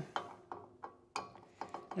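A few soft, irregular clicks and taps as a Phillips screwdriver is handled and set to the ground-wire terminal screw on a CO2 laser tube.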